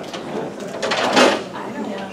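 Indistinct chatter of people in a room, with a brief scraping noise about a second in.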